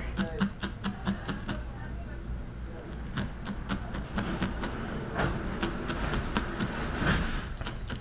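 Single felting needle stabbing repeatedly into a small tuft of white wool on a burlap-covered pad: a quick, uneven run of light ticks, several a second.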